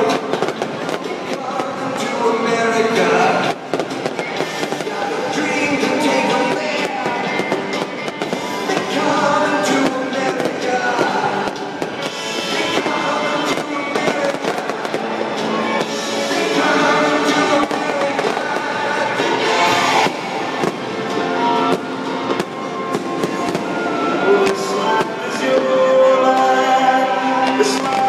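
Fireworks launching and bursting, with many sharp bangs and crackles, over loud music with singing played for the show.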